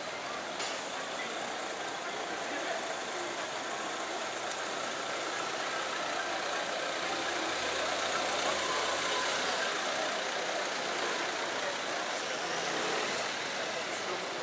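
Busy city street traffic: car engines running close by amid the chatter of passing pedestrians, with a low engine rumble building to its loudest around the middle. Two short high chirps stand out, one about six seconds in and one about ten.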